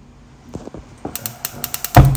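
Gas stove burner's electric igniter clicking rapidly, about ten clicks a second, from about halfway in. The gas catches right at the end with a loud sudden whoomp as the burner flares up.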